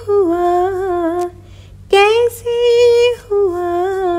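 A woman's solo voice humming a wordless melody, unaccompanied. It moves in held notes across three short phrases with brief pauses between them.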